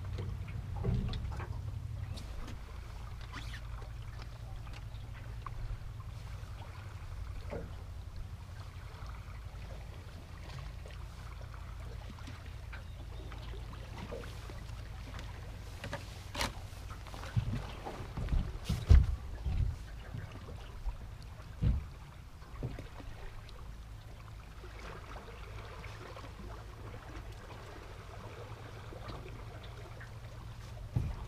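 Steady low rumble of wind and river water around an anchored fishing boat, with a cluster of knocks and bumps on the boat about two-thirds of the way through.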